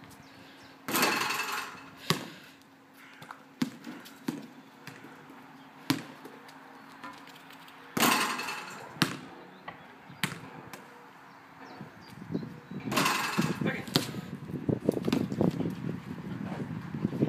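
A basketball striking the backboard and metal rim on shots, three times, each with about a second of rattle, and bouncing on the asphalt court between shots as single sharp knocks. Near the end comes a quick run of small knocks and scuffs as the ball is bounced and pushed along the ground.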